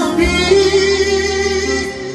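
Live mourning song: a singer holds a long note over the band's accompaniment, with a sustained bass note underneath that fades out near the end.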